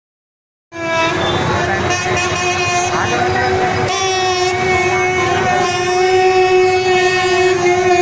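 Loud, steady outdoor fair noise that cuts in abruptly just under a second in: a long held pitched tone over a dense bed of crowd noise and voices.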